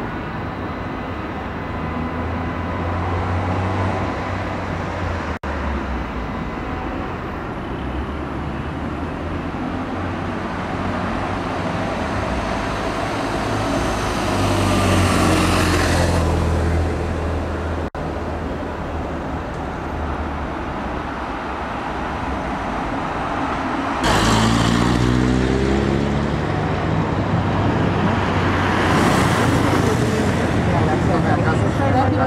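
Road traffic: motor vehicle engines running under a steady rumble. Twice, about a quarter of a minute in and again near the end, a vehicle passes close by and gets louder, its engine pitch falling as it goes past.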